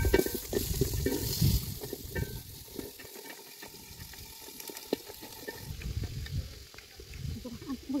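Chopped vegetables tipped from a plastic basket into an aluminium pot of hot broth, landing with irregular splashes and soft clatter, heaviest in the first couple of seconds and tapering off.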